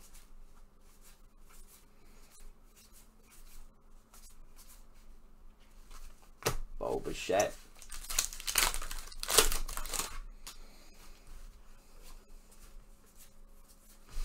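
Baseball card pack wrapper being torn open and crinkled in the hands. The loud ripping comes in a few bursts about eight to ten seconds in, with only faint card handling before it.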